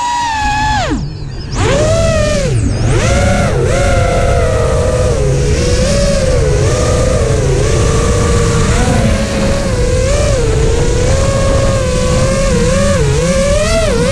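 FPV racing quadcopter's brushless motors and propellers whining, the pitch rising and falling with every throttle change. The whine falls away about a second in, then climbs back and keeps wavering, over a steady rumble of wind and prop wash on the onboard camera's microphone.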